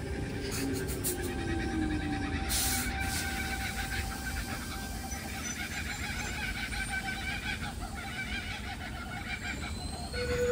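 Sydney Trains Tangara electric train pulling out of the platform and gathering speed, with the whine of its electric traction equipment and the running of wheels on rail. There is a short hiss about two and a half seconds in.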